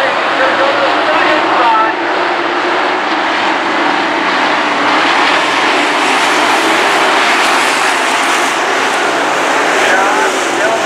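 A pack of dirt modified race cars running at racing speed around a dirt oval, their V8 engines blending into one loud, steady din.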